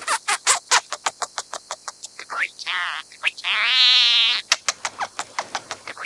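Scaly-breasted munia singing: a quick run of short clicking notes, then one long buzzy, wavering note of about a second just past the middle, followed by more clicks.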